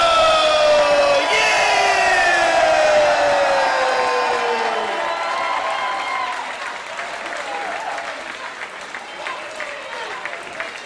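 A ring announcer's voice drawing out a wrestler's name in two long, falling calls for about the first five seconds, over a cheering crowd. The calls then end, leaving crowd cheering and applause.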